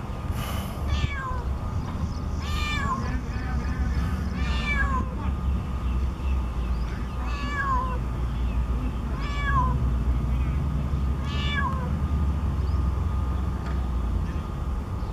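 An animal calling over and over: short, arched, meow-like cries about every two seconds, over a steady low rumble.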